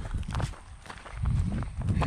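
Footsteps of people walking on a dry dirt bush track strewn with leaf litter and bark, with low thuds growing louder in the second half.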